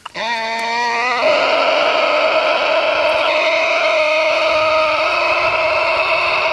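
A long voice-like wail that wavers in pitch for about the first second, then holds one steady note.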